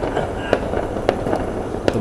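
Distant fireworks going off over the city: sharp bangs at irregular intervals, roughly one every half second.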